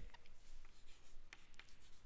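Chalk writing on a chalkboard: faint scratching of the chalk stick with a few short, sharp taps as strokes begin.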